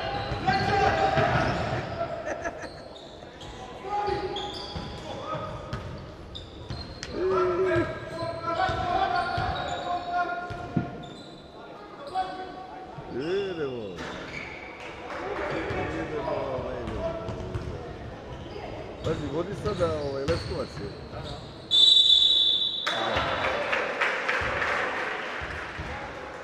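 Basketball game in a sports hall: the ball bouncing on the hardwood court amid players' and spectators' shouting, with a single referee's whistle blast, the loudest sound, about 22 seconds in.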